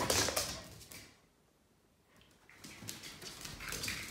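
A burst of rustling movement, then from about two and a half seconds in a run of light clicking steps: a dog's claws on a tiled floor.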